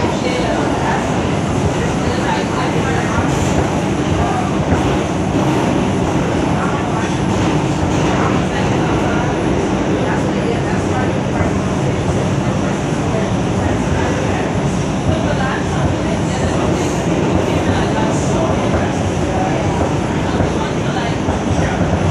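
Steady running noise of an R142 subway train heard from inside the car between stations: a loud, even rumble of wheels on rail, with a little clickety-clack.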